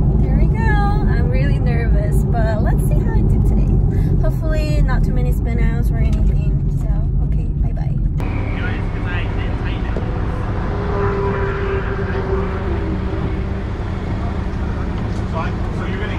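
Steady low road and engine drone inside a Porsche 718 Cayman's cabin while cruising on the highway, with a woman talking over it. About halfway through, the drone changes suddenly and becomes quieter.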